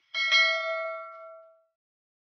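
Subscribe-button animation sound effect: a faint mouse click, then a bright bell ding struck twice in quick succession that rings out and fades within about a second and a half.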